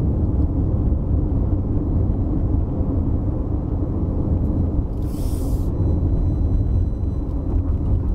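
Steady low rumble of road and engine noise inside the cabin of a 2020 Toyota RAV4 with its 2.5-litre four-cylinder, driving along, with a brief hiss about five seconds in.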